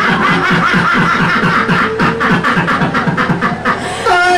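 Laughter: a long, even run of short ha-ha sounds, several a second.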